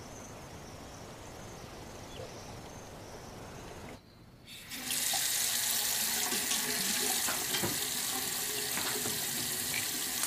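Faint steady outdoor background. After a short drop about four seconds in, a bathroom tap starts running steadily into a sink.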